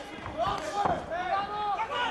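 Men shouting, with two sharp thuds about half a second and almost a second in: knee and glove strikes landing in a kickboxing clinch.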